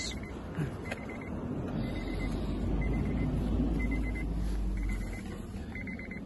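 A short high electronic beep repeating about once a second, over a low rumble that swells in the middle and drops away about five seconds in.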